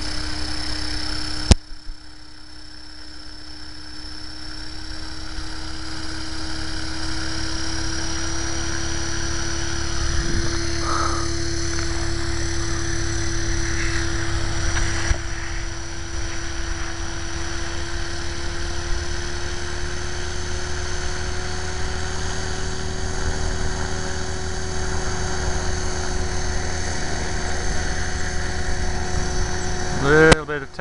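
Align T-Rex 500 electric radio-controlled helicopter hovering: a steady rotor buzz with a high motor whine, its pitch creeping slowly upward. A sharp click about a second and a half in, after which the sound is briefly quieter and builds back over several seconds.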